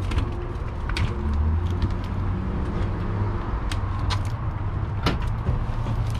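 A steady low rumble under a handful of sharp metal clicks and rattles from a hand truck and a key ring jangling on a wrist.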